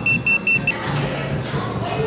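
Restaurant table pager beeping in a fast, high-pitched series of about five beeps a second, cutting off within the first second: the signal that the order is ready.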